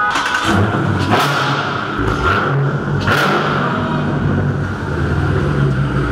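Car engine running in an underground parking garage, rising in a few brief revs in the first half, then settling into a steady idle.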